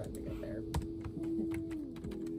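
Typing on an office computer keyboard: a quick, uneven run of key clicks, one louder keystroke about three quarters of a second in.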